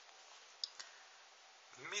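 Two short, faint clicks about a fifth of a second apart, from a pen tapping on paper, over quiet room tone.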